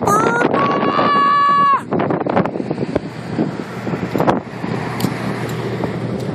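A man's voice holds a high, drawn-out note for nearly two seconds, then cuts off. After that, wind rumbles on the microphone.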